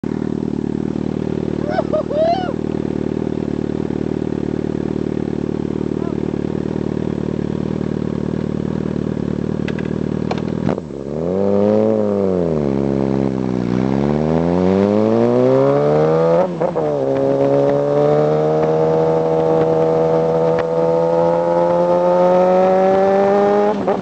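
2007 Suzuki GSX motorcycle engine heard from on board with wind noise, running at a steady cruise for about ten seconds. The throttle then shuts suddenly, the revs rise, fall and rise again, there is a quick gear change a few seconds later, and the revs climb steadily as the bike accelerates.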